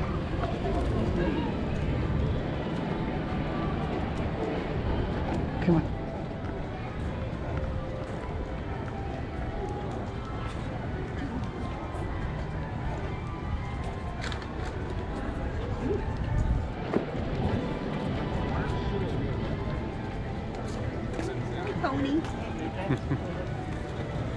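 Pedestrian street ambience: passers-by talking and music playing in the background, a steady mix with no single sound standing out.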